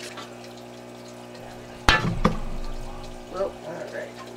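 Splashing in an aquarium as something is put into the water: two sharp splashes about a third of a second apart near the middle, then water settling, over a low steady hum.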